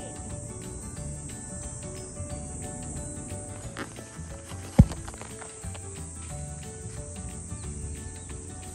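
A steady, high-pitched drone of insects outdoors, with a single loud thump about five seconds in as the phone filming is jolted while being handled.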